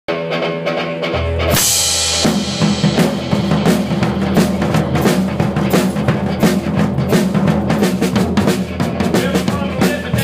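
Live band music heard from the drummer's seat, the drum kit close and loudest: a cymbal crash about a second and a half in, then a steady beat on kick drum and snare over bass and the rest of the band.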